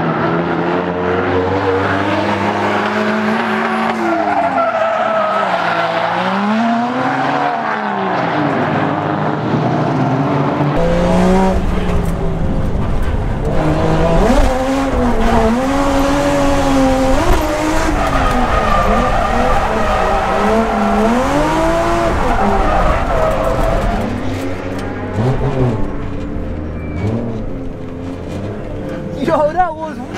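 Toyota Chaser JZX100 drift car's engine revving up and down again and again through the slides, with tyre squeal.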